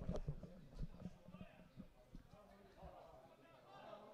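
Faint ambient sound from a football pitch during play: scattered soft knocks and thuds, the loudest right at the start, with faint distant voices.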